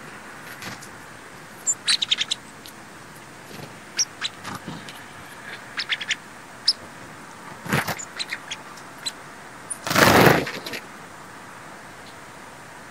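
Sparrows feeding give short, sharp, high chips and ticks in scattered clusters over a steady background hiss. About ten seconds in there is a brief loud rush, like a bird's wings whirring as it takes off.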